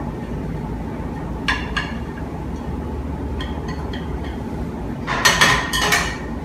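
Light clinks of a frying pan and chopsticks against a ceramic plate as an omelette is turned out onto it, with a louder run of clinks and knocks near the end. A steady low background hum runs underneath.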